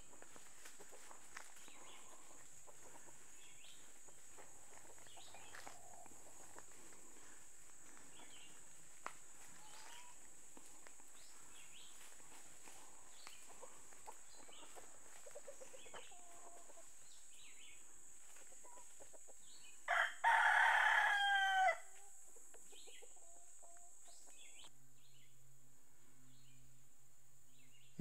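A Dominique rooster crowing once, a call of about two seconds that stands out loudly a little over two-thirds of the way in. Before it, faint scattered clucks and calls from the flock.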